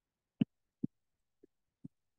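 Four soft, short taps at uneven intervals; the first two are the loudest.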